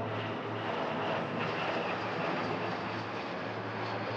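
Twin-engine jet airliner flying overhead, its engines a steady rushing noise.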